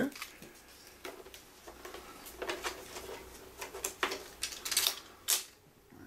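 Light handling clicks and rustles of a rolled 35mm filmstrip and its plastic canister as the strip is set onto a projector's film holder, with several sharper clicks in the second half.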